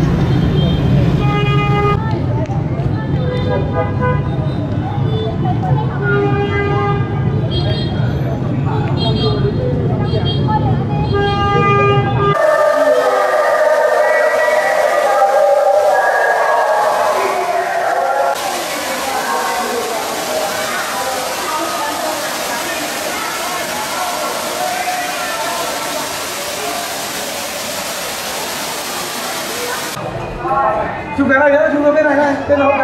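Road traffic rumbling with repeated short car and motorbike horn toots. About twelve seconds in, this cuts abruptly to indoor water running down a wall fountain, a steady hiss, with the murmur of people's voices.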